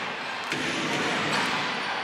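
Steady crowd noise in a basketball arena, with a basketball bouncing on the court. One sharp knock stands out about half a second in.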